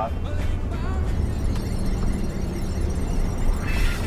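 Music playing on a car radio inside a moving car, over the steady low rumble of the engine and road.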